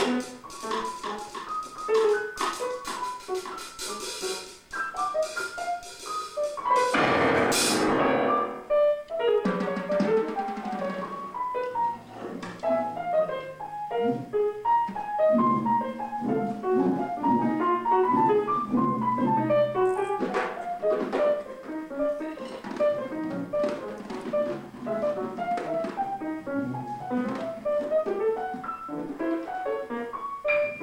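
Grand piano and drum kit improvising together live: quick, dense runs and clusters of piano notes over cymbals and drums. A loud, dense burst of sound swells up about seven seconds in.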